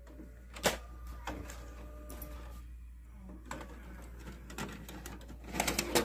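DVD player ejecting its disc: the tray mechanism whirs faintly and clicks, with a sharp click about two-thirds of a second in and a quick run of clicks near the end.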